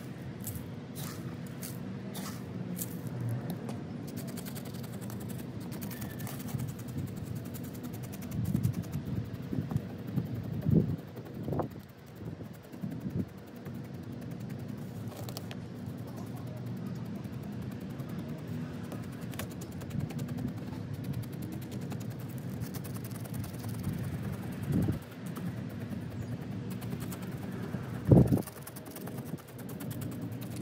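Coarse gritty bonsai soil mix crunching and rattling in a plastic pot as a chopstick is pushed in and worked around the roots, in irregular scrapes with a few louder bursts, over a steady low hum.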